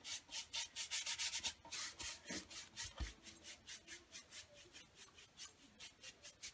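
Chip brush loaded with glaze scrubbing back and forth on a raw wooden board: faint, rapid bristle strokes, about five or six a second at first, growing fainter in the second half.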